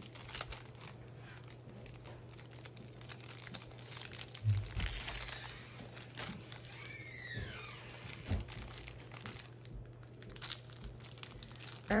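Clear plastic packaging bags crinkling and rustling as they are handled, in a run of short crackles with a dull thump about four and a half seconds in and a few squeaky rubbing sounds soon after. A steady low hum lies underneath.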